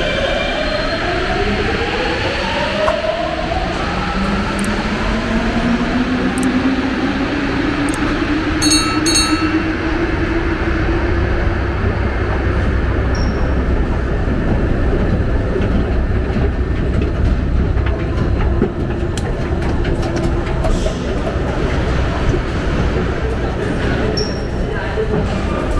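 Paris Métro Line 14 rubber-tyred train pulling out of the station, its motor whine rising steadily in pitch over about ten seconds above a constant low rumble.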